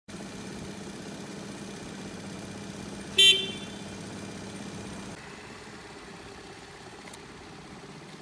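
A single short beep from a scooter's electric horn about three seconds in, over a steady low background hum.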